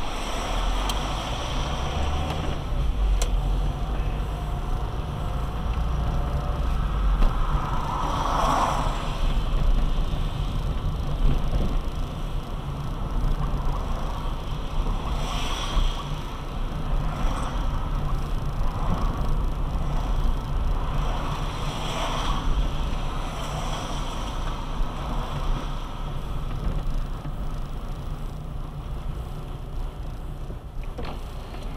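A car driving on a wet road, heard from inside the cabin: a steady low engine and road rumble with tyre hiss, swelling briefly a few times.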